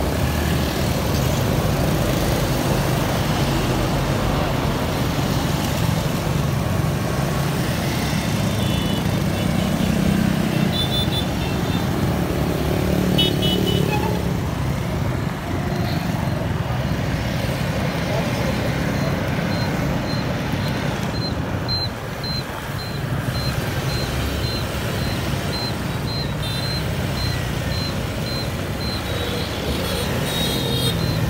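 Steady road traffic of motorbikes and cars passing on a wet road: engines running and tyres hissing on the wet surface. Through the last third, a high, evenly repeating beep sounds about one and a half times a second.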